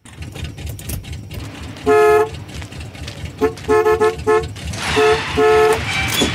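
A car horn honking: one honk about two seconds in, a quick run of short toots, then two more honks near the end, over the low rumble of an engine.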